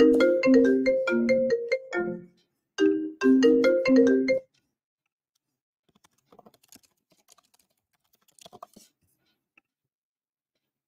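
A marimba-like electronic tune of quick, short notes, played in repeating phrases with brief gaps, stopping suddenly about four and a half seconds in. After it only faint small knocks are heard.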